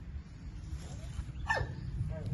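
A single short animal call about one and a half seconds in, falling steeply in pitch, with a fainter short call just before it, over a steady low rumble.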